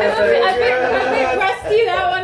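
Several people talking over one another, lively chatter with no music.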